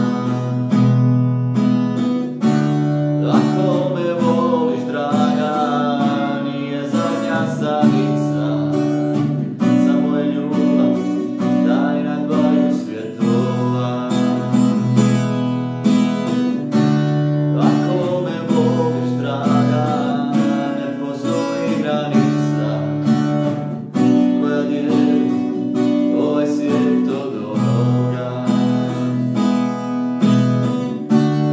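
A man singing to his own strummed acoustic guitar. His voice comes in phrases with short guitar-only stretches between them.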